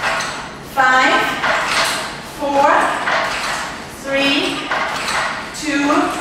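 A voice calling out repetition counts, four counts about a second and a half apart, over steady room noise.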